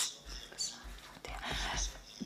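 Soft breathing and faint whispered mouth sounds picked up close on a podium microphone, in two short breathy patches with no voiced words.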